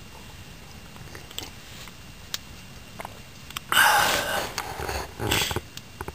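A person slurping hot water from a cup. A few small clicks come first, then a loud slurp about four seconds in and a shorter one just after five seconds.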